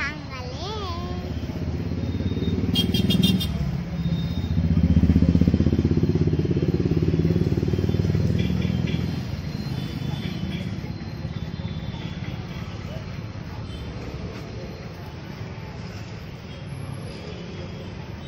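Road traffic beside the stall: a motor vehicle's engine rumble builds, is loudest about five seconds in and fades by about nine seconds. A steady lower traffic hum continues after it.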